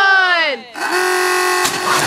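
Excited human voices whooping as a wooden throwing-arm catapult fires: a call that swoops up and down in pitch, then a higher call held steady for about a second.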